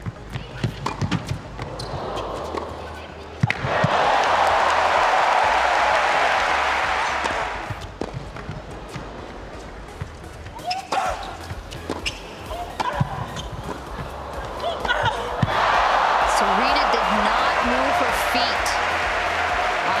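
Tennis rally of racket strikes on the ball, each hit a sharp crack. Then a long stretch of crowd applause and cheering after the point. The pattern repeats: a second rally of hits about ten seconds in, followed by more applause near the end.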